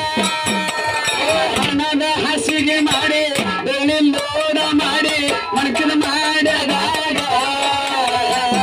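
Live Kannada dollina pada folk song: a man sings with long held, wavering notes into a microphone over steady drumming.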